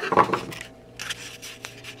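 Rubbing and scraping handling noise as the handheld camera is picked up and moved, loudest in the first half second, with softer rustles about a second in.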